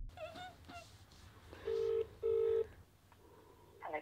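Telephone ringback tone through a mobile phone's speaker: one double ring of two short, identical low beeps a fraction of a second apart. It is the sign that the called phone is ringing while the call waits to be answered.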